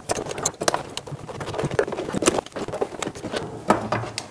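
Metal hand tools (pliers, wrenches, screwdrivers, a hammer) being put back into a leather tool pouch: irregular clinks and knocks of steel on steel, with softer rubbing of tools sliding into the leather pockets.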